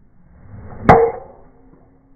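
Golf driver swished through the air and striking the ball just under a second in with one sharp crack, followed by a short ringing tone.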